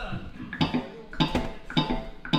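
A small country band's count-in: short sounds on an even beat, about one every 0.6 seconds, just before the band starts playing.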